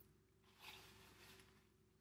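Near silence, with a faint, brief rustle about halfway through of dry salt and rose petals being scooped into a paper tea bag.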